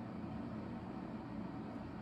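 Steady low background hum and room noise, with no distinct sound standing out.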